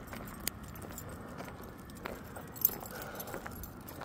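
Faint light metallic jingling of small metal pieces, with scattered small clicks and a couple of sharper ticks, one about half a second in and one just past the middle.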